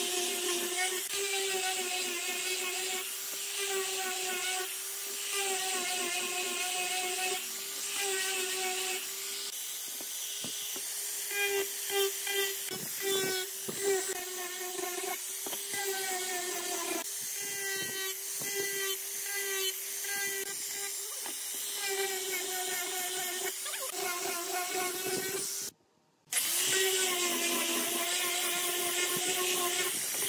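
Angle grinder with a sanding disc running and sanding a wooden board: a steady motor whine that wavers slightly in pitch as the pad is pressed and moved across the wood. It cuts out for about half a second near the end.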